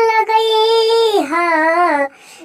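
A high-pitched voice singing a long held "ho" that opens a Bhojpuri song, with a slight waver, stepping down to a lower note a little past halfway.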